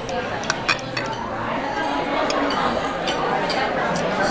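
Metal knife and fork clinking and scraping against a ceramic plate while cutting food, a handful of separate sharp clicks, over a murmur of background chatter.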